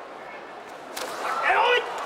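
Sumo tachiai: a sharp smack as two wrestlers' bodies collide about a second in, followed by the gyoji referee's high-pitched shout as the bout gets under way.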